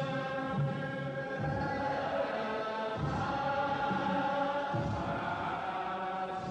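Ethiopian Orthodox church chant: a group of voices singing long, held notes.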